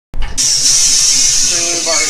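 Compressed air hissing steadily through the air hose and fitting of a pressurised oil-priming tank, starting just after the beginning, while the tank is pressurised to push oil into a 6-71 Detroit Diesel.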